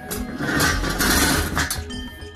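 An electric welding arc crackling for about a second and a half, tacking a steel foot onto a welded steel furniture frame, over background music.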